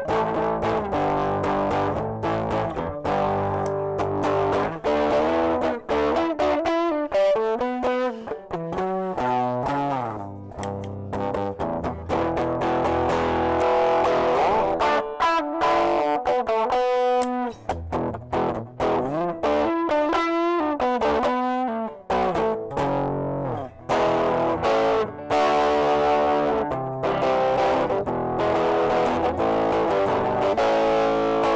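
Harley Benton TE-90 electric guitar played with a distorted tone: a continuous run of riffs and lead lines, the notes changing quickly, with a few pitch slides.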